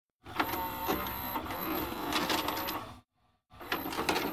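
A small machine mechanism whirring and clicking, with a thin high whine over it. It cuts out about three seconds in and then starts again.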